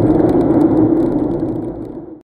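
Steady road and engine noise inside a moving car's cabin, a low drone that fades out over the last second.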